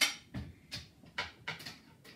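About five light knocks and clinks of dishes and utensils being handled on a kitchen counter, the first one the loudest.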